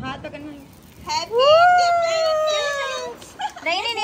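A long howl, rising quickly in pitch and then slowly falling over about two seconds, with voices around it.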